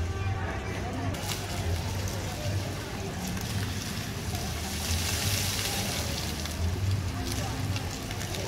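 Floor fountain jets spraying up from the paving and splashing into a shallow pool, a hissing spray that swells in the middle, with people's voices in the background.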